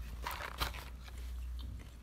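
Someone chewing a piece of chili-coated coconut snack, with a few soft crunches.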